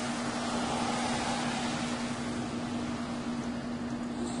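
A steady machine-like hum: one constant low drone under an even hiss, unchanging throughout.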